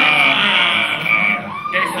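Live hip hop performance through a club PA with the beat's bass cut out: a held, wavering high tone, with a short rising-and-falling glide near the end, sits over voices on the microphone.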